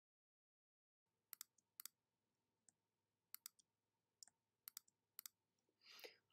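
Quiet computer mouse clicks, single and in quick pairs, about one every half-second to second, as shapes are selected and recoloured in Illustrator. The first second is silent.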